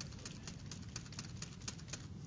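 Computer keyboard keys tapped in quick succession, a rapid run of light clicks. The up-arrow and return keys are being pressed over and over to re-run the same command.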